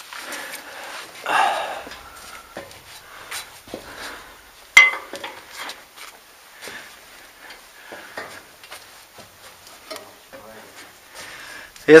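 Climbing a caged steel ladder: scattered clanks and clicks of hands and boots on the metal rungs, with breathing, and one sharp ringing metallic knock about five seconds in.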